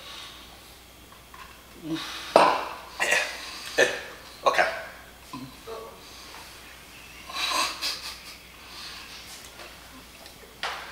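A man's throat sounds as a mouthful of dry, crunchy bird food won't go down: several short, sharp coughs and gagging noises between about two and five seconds in, and another near eight seconds.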